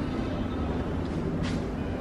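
Steady low background hum and rumble with no clear source in view, with one faint click about one and a half seconds in.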